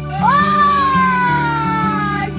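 A young child's long, excited squeal of joy at scoring a basket. It rises quickly, then slides slowly down in pitch for about two seconds, over soft background music.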